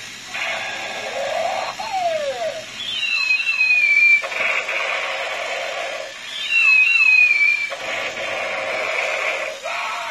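Galactic Space Warrior walking robot toy playing its electronic sound effects through its small speaker. Stretches of buzzy electronic noise are broken twice, a few seconds apart, by a high synthesized sweep that falls and warbles.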